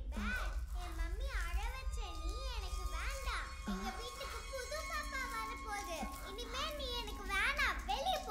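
A child's wordless sing-song voice, wavering up and down in pitch, over a steady low drone.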